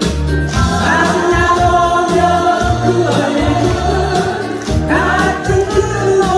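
A woman sings a Korean popular song live through a microphone and PA over an accompaniment with a steady pulsing bass line. A new phrase begins about five seconds in on a rising note.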